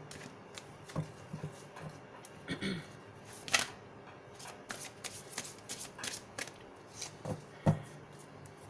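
A deck of oracle cards shuffled by hand: irregular soft card clicks and flutters, with two sharper snaps, one about three and a half seconds in and one near the end.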